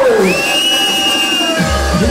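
Hardcore rave music playing loud over a club sound system. The kick drum drops out for a short breakdown with a high held synth note, then the fast kick beat comes back in near the end.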